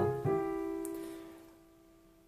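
Roland digital piano in its concert-piano voice: a two-note right-hand chord, a melody note with a third below it, is struck once just after the start and left to ring, dying away to near silence within about a second and a half.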